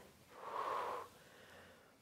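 A woman's single audible breath, a short unpitched rush of air lasting about half a second, taken with the effort of lowering into a deep wide squat.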